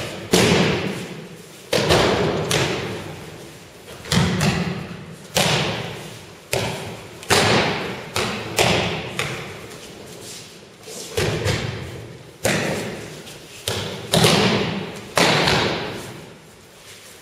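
Repeated thuds of aikido breakfalls as people are thrown onto tatami mats, about fourteen of them coming unevenly, roughly one a second. Each thud rings on briefly in the hall's echo.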